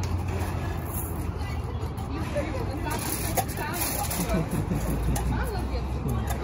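Indistinct background voices and chatter over a low, steady rumble.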